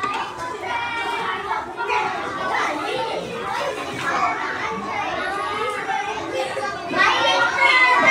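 Schoolchildren chattering in a classroom, many voices talking over one another, growing louder near the end.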